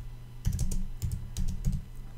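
Computer keyboard being typed on: a run of several quick, separate keystrokes.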